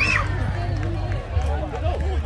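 Many indistinct voices of spectators and players chattering, with a short, high shout right at the start, over a steady low hum.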